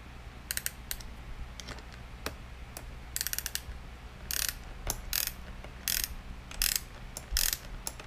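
Small wrench tightening a GoPro mount screw: metal clicks and short scraping strokes as the wrench is turned and shifted, with a quick run of clicks about three seconds in.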